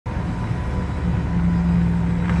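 An ice resurfacing machine running across the rink: a steady low rumble with a hum that grows stronger about a second in.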